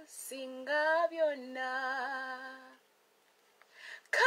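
A woman singing a hymn unaccompanied, in sustained notes that rise and fall, breaking off about three seconds in and followed near the end by a short intake of breath.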